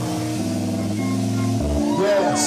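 Live band music: slow held instrumental notes over a low bass line, with the notes changing about every half second and the bass stepping down lower near the end. There are no drum hits.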